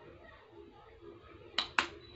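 Two sharp plastic clicks about a fifth of a second apart, near the end: the flip-top cap of a plastic squeeze tube snapping.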